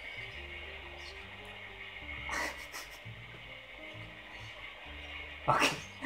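Quiet background music of slow, stepping sustained notes, with a brief voice-like sound about midway and a short, louder burst of laughter just before the end.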